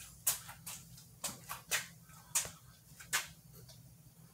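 About seven light, sharp clicks at uneven intervals over a faint steady low hum.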